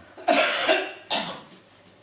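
A person coughing twice in quick succession, the first cough longer and louder than the second.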